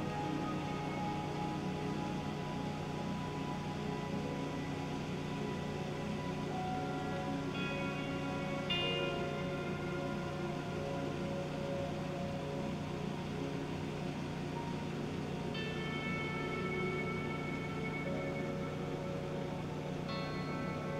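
Background music of slow, held chords that change a few times.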